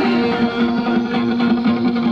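Live rock band playing an instrumental stretch: electric guitar over one long held note, with no vocals in this moment.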